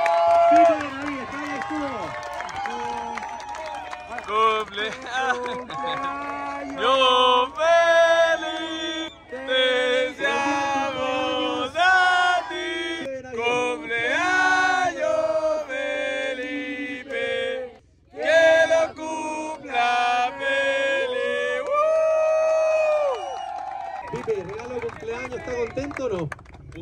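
A man singing a melodic line with long held notes, phrase after phrase, with a brief pause about two-thirds of the way through.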